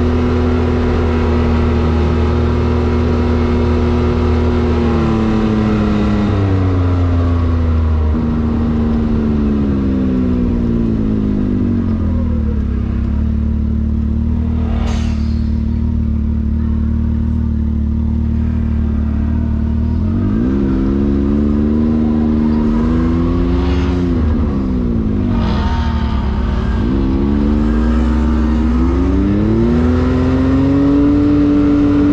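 Turbocharged side-by-side UTV engine heard from onboard while driving: it holds steady revs, eases off with a slowly falling pitch, holds again, then rises and dips several times before climbing near the end. A few short rushing sounds cut in midway and near the end.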